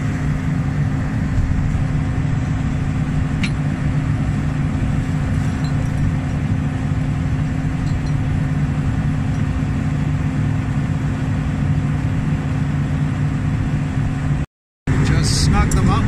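Steady low drone of an idling engine, even in pitch and level, with a faint click a few seconds in. Near the end the sound cuts out completely for a moment, then the drone resumes.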